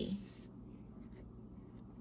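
Faint scratching of a pen tip on lined paper as a number is written.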